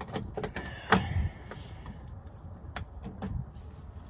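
Scattered small clicks and knocks from hands working at a car's rear license-plate recess, fitting a temporary tag, over a low rumble. The loudest knock comes about a second in, and a couple more follow near the end.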